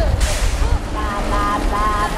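Wind rumbling on a handheld microphone, with a short burst of hiss just after the start. From about a second in, a young woman's voice sings held, high notes through the microphone.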